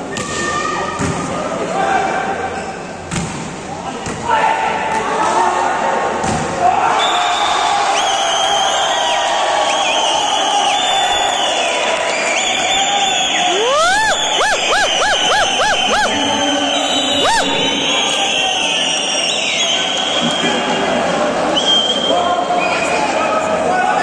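A volleyball thumps a few times against hand and floor in an echoing sports hall as it is served. From about four seconds in the crowd shouts, cheers and whistles over the won point, with a quick run of rising whistles about two-thirds of the way through.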